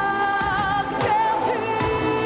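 A woman singing a pop song into a microphone over pop accompaniment: she holds a long note with vibrato, breaks off, and starts a new note about a second in.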